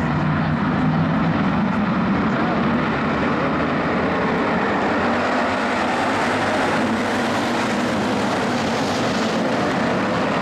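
A full field of IMCA Hobby Stock race cars running hard together in a pack on a dirt oval, a loud, steady mass of engine noise.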